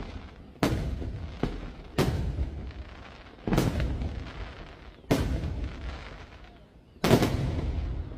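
Aerial firework shells bursting overhead: five loud booms about a second and a half apart, each followed by a rolling rumble, with a smaller report between the first two.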